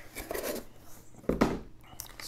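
Small plastic bags of electronic components being tipped out of a cardboard box onto a wooden table: a soft rustle, then one loud knock about a second and a half in.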